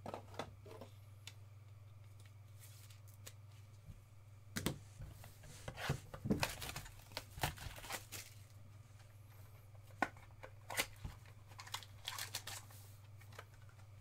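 Clear plastic wrapper crinkling and tearing as it is handled and pulled apart: scattered crackles and snaps, starting about four seconds in, over a steady low hum.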